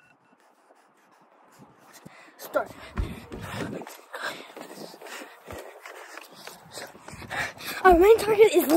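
Near silence for the first second or so, then rustling and handling noise on a phone microphone as it is carried around outdoors, with low thumps about three and five and a half seconds in. Breathing and faint, indistinct voices run underneath.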